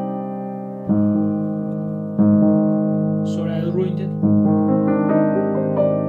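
Grand piano played slowly: chords struck about a second in, at about two seconds and again at about four seconds, each left ringing and fading. A brief voice sound comes over the piano about three seconds in.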